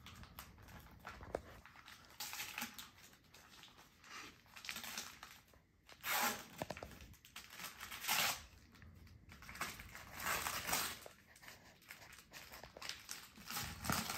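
Christmas wrapping paper being torn and crumpled by hand as a present is unwrapped, in irregular rustling bursts, the loudest around the middle.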